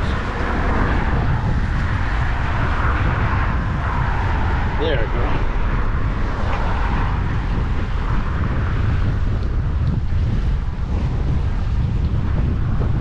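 Steady low rumble of wind on the microphone mixed with road traffic, holding at one level throughout.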